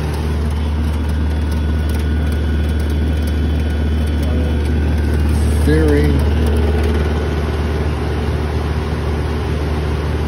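Lennox central air conditioner's outdoor condenser unit running: a loud, steady low hum from the compressor and fan.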